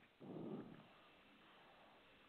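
Near silence: room tone, with one faint, short, low sound in the first second.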